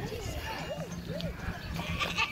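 A goat bleating: a loud, quavering call that starts near the end, over soft background voices.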